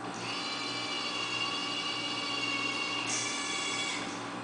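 Electric joint motors of a five-joint robot arm trainer whining as the arm swings and lowers its gripper: a steady, high whine of several tones, with a brief hissier burst about three seconds in.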